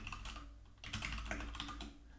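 Typing on a computer keyboard: a run of quick key clicks, with a short pause a little under a second in.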